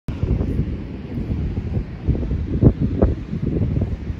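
Wind buffeting the microphone: a loud, irregular low rumble that gusts harder about two and a half and three seconds in.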